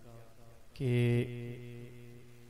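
Speech only: a man speaking Urdu into a microphone draws out a single word for about half a second, a little under a second in, and it rings on afterwards in a long, fading echo.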